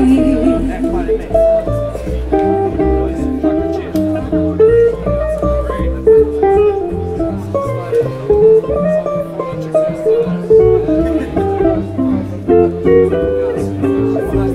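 Swing guitar solo on a hollow-body electric guitar, a run of quick single picked notes, over a plucked double bass line.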